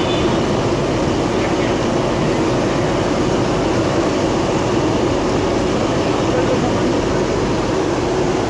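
Hot oil sizzling steadily as round patties and samosas deep-fry in large iron karahis: a dense, even noise with no breaks.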